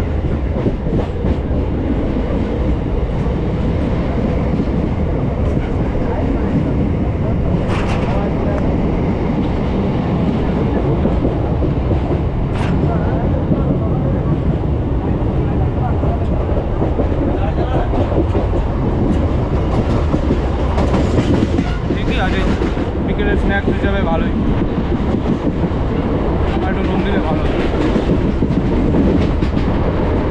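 A MEMU electric multiple-unit passenger train running, heard from its open coach doorway: a steady, loud rumble of wheels on rail, with a couple of sharp clacks in the first half.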